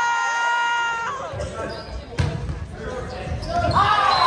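A volleyball bouncing on a hardwood gym floor with sharp knocks, echoing in the hall, one sharp smack about two seconds in. Before it, a long held high note ends about a second in, and a voice calls out near the end.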